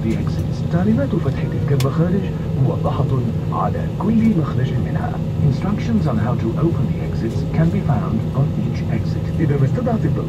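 Voices talking throughout, over the steady low hum of an airliner cabin as the plane taxis.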